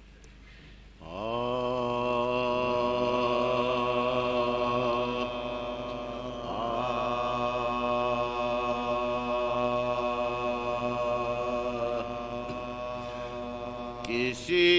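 A man's unaccompanied voice in soz-khwani chant, drawing out long held notes: the first rises in about a second in, and a second long phrase begins after a brief break near the middle.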